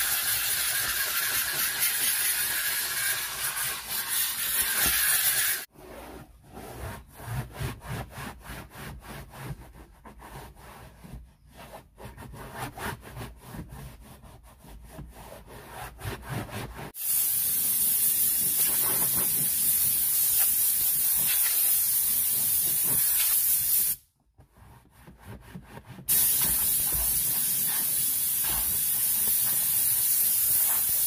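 A McCulloch 1385 steam cleaner's nozzle hissing as it steams a rubber floor mat, stopping suddenly about five seconds in. A microfiber towel then rubs and wipes the mat quietly. A compressed-air blow gun then hisses loudly, with a two-second break near the end.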